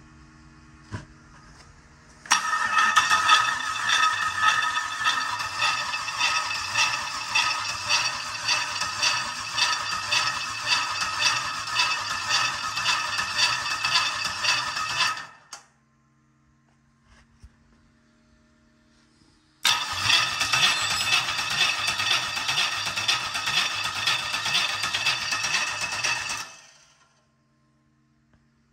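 GM LS V8 engine on an engine stand cranked over by its starter motor in two long attempts, about thirteen and then seven seconds, each stopping abruptly, without the engine catching. It is cranking with no spark, which the owner traced to an unplugged crankshaft position sensor.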